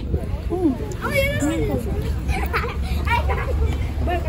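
Children's voices chattering and calling out close to the microphone, over a low steady rumble of street noise.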